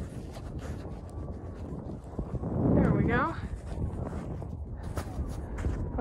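Wind buffeting the phone's microphone, with handling rumble and a few clicks as a rubber strap is worked around the phone. A brief voice sound comes about halfway through.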